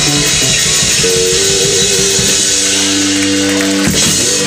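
Live rock band with electric guitars, bass and drums playing the last bars of a song. About halfway through the drum hits drop out and a final chord is held for over a second before it stops just before the end.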